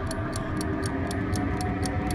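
Background game-show suspense music: a steady clock-like tick about four times a second over a held chord.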